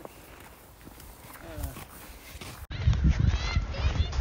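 Faint steps in snow with a soft voice now and then. About two-thirds in, a sudden change to a loud low rumble on the phone's microphone, with a toddler's high-pitched squealing vocal sounds over it.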